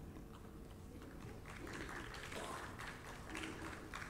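Quiet hall room tone with a faint steady hum and soft, indistinct voices in the middle.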